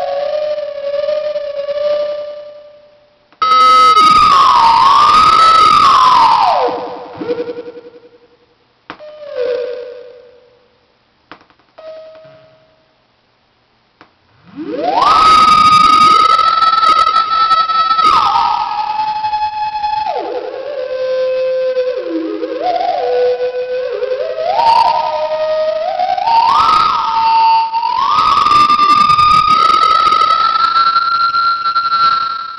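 Thereminator theremin app on an iPhone 3G playing a wavering, theremin-like synth tone. It starts with a held note with vibrato, then gives several swooping notes that fade out with short gaps between them. About halfway through it swoops up to a high held note and then plays a melody that slides up and down between notes.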